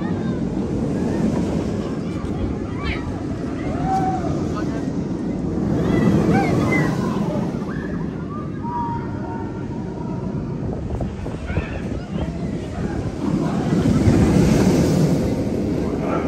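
Vekoma steel roller coaster train rushing along its track, a rumbling roar that swells as a train passes about six seconds in and again near the end. Riders scream and shout over it.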